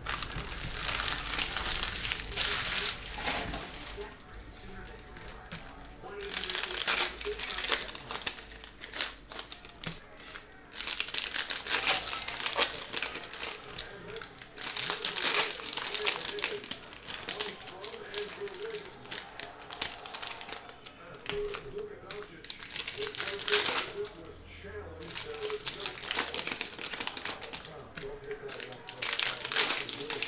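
Plastic trading-card pack wrappers crinkling as packs are torn open, mixed with cards being slid and flipped in hand-held stacks. The crackling comes in irregular bursts with short lulls.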